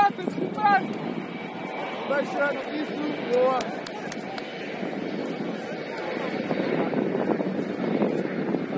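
Footballers shouting short calls to each other during play, over a steady rushing noise that grows louder over the last few seconds, with a few sharp taps about halfway through.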